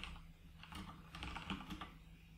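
Computer keyboard keys typed in a quick run of faint clicks, a command being entered.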